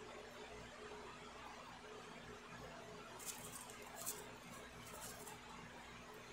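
Faint wet mouth clicks of someone chewing a frozen, layered wad of breath strips that has turned gummy rather than crisp, so there is no crunch. The clicks come a few times about three to five seconds in, over quiet room tone.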